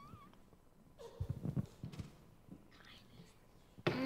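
Faint whispering and soft murmuring voices close to a handheld microphone. A louder voice starts just at the end.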